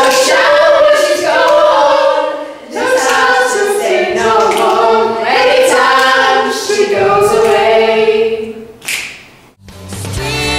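A small group of voices singing a cappella in harmony, holding long sustained chords in several phrases before stopping about a second before the end.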